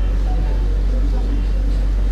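A loud, steady low hum throughout, with faint voices in the background.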